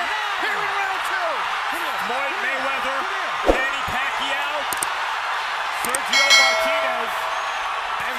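Arena crowd cheering and shouting over one another in reaction to a knockdown. A single sharp knock comes about three and a half seconds in, and a brief ringing tone a little after six seconds.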